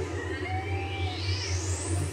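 Synthesized sound effect: a thin tone sweeping steadily upward in pitch over about two seconds, with a short held note partway through, over a low steady hum.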